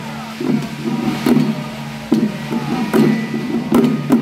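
Taoist xiaofa ritual troupe chanting together in a steady low drone, while hand-held frame drums on long handles are struck in an uneven beat, roughly once or twice a second.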